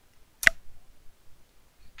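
A single sharp click about half a second in.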